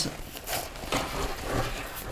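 Hands working the zip and nylon fabric of a BCD's integrated weight pouch, a soft irregular rustling.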